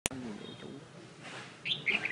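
Caged songbird giving two short, bright chirps near the end, the first falling in pitch. A click at the very start.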